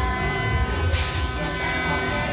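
Loud fairground ride noise: a steady buzzing drone over heavy, thumping bass, with a sharp burst of hiss about a second in.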